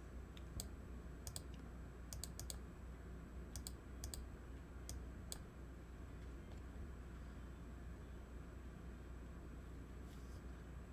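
Computer mouse clicking: about a dozen sharp clicks, some in quick pairs and triples, over the first five seconds or so, then only faint ones, over a low steady hum.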